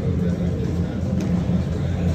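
Steady low rumble of a large indoor space, with indistinct background voices.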